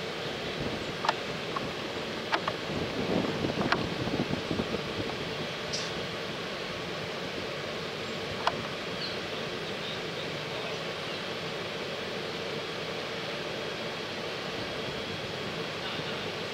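Steady outdoor machinery hum with wind on the microphone, broken by a few sharp clicks in the first half.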